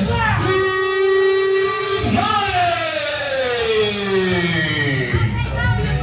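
Wrestler's entrance music. A voice holds one long note, then slides slowly down in pitch over a few seconds, and the beat comes back in near the end.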